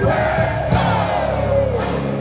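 Live band music played loud through a concert PA, recorded from among the audience, with a long shouted voice over it that drops in pitch near the end, and the crowd shouting.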